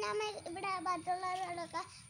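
A young girl's voice in a sing-song, half-sung delivery, holding several notes steadily.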